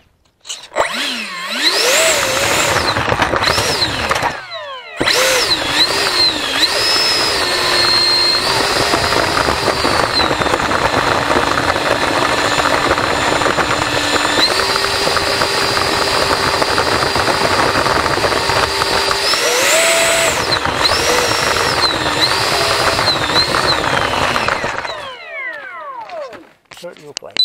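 RC airplane's electric motor and propeller, recorded from a camera on board, running on the ground as it taxis. The whine rises and falls with the throttle, dips briefly a few seconds in, holds steady through the middle, and stops about a second before the end.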